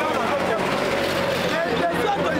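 A man talking loudly and animatedly, close to the microphone, over the chatter of a crowd and a steady low hum.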